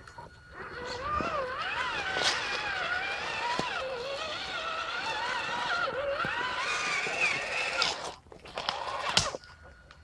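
Traxxas Summit RC truck's electric motor and drivetrain whining as it crawls over rocks, the pitch rising and falling with the throttle. The whine stops about eight seconds in, and a single sharp knock follows about a second later.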